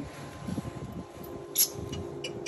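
Quiet handling noises inside a standby generator's enclosure, with one short sharp click a little after halfway and a faint steady hum from about halfway on.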